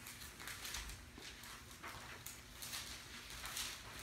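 Pages of a Bible being leafed through by hand: a series of faint, soft paper rustles.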